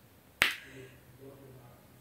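A single sharp click about half a second in, followed by faint low sound.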